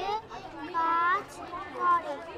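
Children's voices: one child speaking in a high voice, unintelligible, over a faint background of other children in the room.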